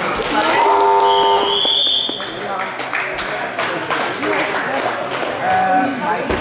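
Wrestling timer buzzer sounds for about a second, marking the end of the bout's time, followed by a short, slightly rising whistle blast. Voices and shouts from the hall run throughout.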